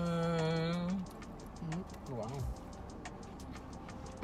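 A long, steady hum of enjoyment ("mmm") from someone eating, lasting about a second. A couple of short voice sounds follow about a second and a half later.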